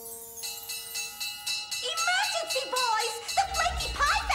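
Cartoon firehouse alarm: a rapidly ringing alarm bell with a wavering siren wail, after a short held musical chord. A low rumble comes in near the end.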